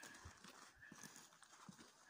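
Near silence: faint outdoor room tone with a few soft, scattered ticks.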